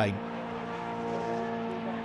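Engines of club racing saloon cars running at speed as they pass close by on the circuit, a steady engine note.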